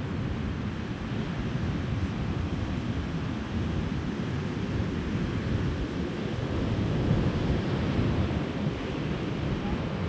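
Wind buffeting the microphone over a steady rush of wind and surf on an open beach.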